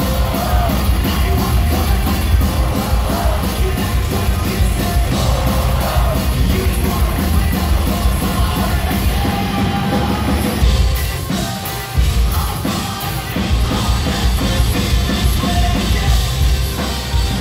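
A live post-hardcore band playing loudly, with heavy bass and drums under sung and yelled lead vocals. The music dips for a moment about twelve seconds in, then hits again at full force.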